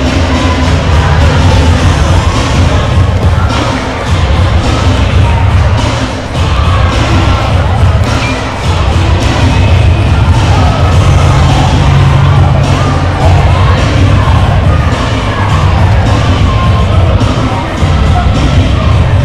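Loud music with a heavy, pulsing bass line, under a crowd cheering and talking in a gymnasium.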